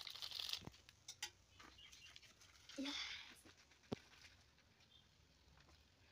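Faint crinkling of a foil seasoning sachet as it is squeezed and shaken out over noodles, followed by a few scattered soft clicks.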